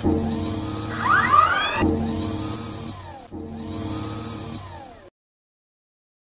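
Whirring electric servo-motor sound effects for an animated robot arm: a humming motor whir in three stretches, each starting afresh, with sweeping rising and falling pitch glides, loudest about a second in. It cuts off suddenly about five seconds in.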